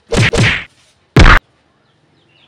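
Three short, loud whacking noises: two close together at the start and a louder one about a second in.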